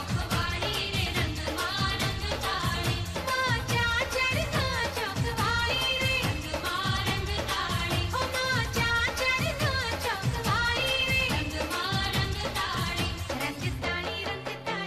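Traditional Gujarati garba dance song: a singer's voice carrying the melody over a steady, rhythmic drum beat.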